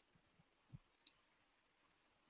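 Near silence with a couple of faint, short clicks.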